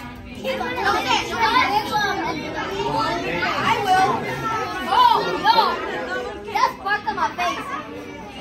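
A group of children chattering and talking over one another, their voices overlapping so that no words stand out.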